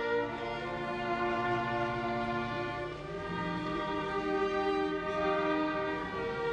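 Small string ensemble of violins and a cello playing a slow piece in long held chords, the harmony changing every couple of seconds.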